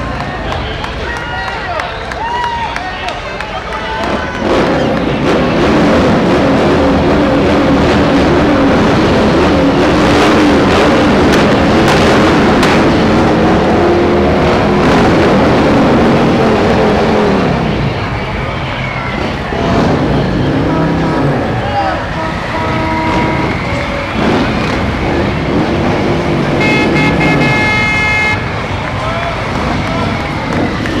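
Parade vehicles passing close by: a military 6x6 cargo truck's engine running loud as it goes past through the middle of the stretch, then motorcycles, with crowd voices throughout and a short horn toot near the end.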